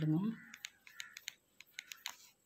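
Pencil marking small crosses on notebook paper, making a quick, uneven run of short ticks, one for each stroke.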